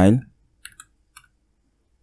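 A few soft computer keyboard key clicks in two short groups about half a second apart, as code is entered in an editor.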